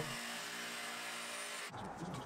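Milwaukee M18 Fuel cordless jigsaw running steadily as its blade cuts a curve in thin plywood, heard fairly low; the steady run breaks off near the end.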